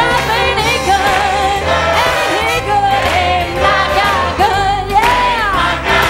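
Gospel song: a woman's solo voice sung through a microphone, with a choir and band behind her and a steady bass line.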